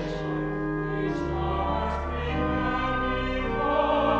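A small choir singing a slow sacred piece, sustained chords that move to new notes every second or so, with sung consonants audible, in the reverberant space of a cathedral.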